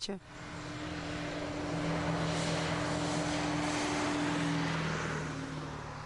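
An engine running steadily with a rushing noise: a drone that holds one pitch, swells in over the first second and eases off near the end.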